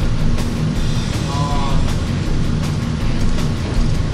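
A steady low rumble covers the whole track, the noise of a recording fault, with background music under it and a brief voice about a second and a half in.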